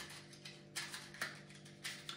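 A few faint, short scrapes and clicks from a cardboard matchbox and wooden match being handled in the fingers, three soft ticks spread across two seconds, over a steady low hum.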